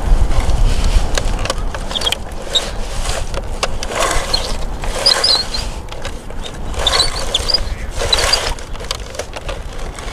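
Tracks and blade of a Bruder CAT toy bulldozer pushed by hand through wet sand: a rattly mechanical clatter with scraping, rising in surges about every second or two as the blade shoves the sand.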